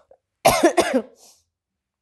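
A woman coughing twice in quick succession, about half a second in.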